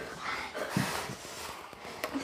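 Quiet movement of children doing push-ups on a carpeted floor: faint rustling and two soft thuds about a second in.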